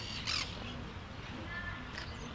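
Faint bird calls during a lull in talk: a short, harsh squawk near the start and a thin chirp in the second half, over low background murmur.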